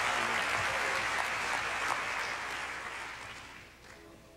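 Congregation applauding, the clapping fading away over the last second and a half.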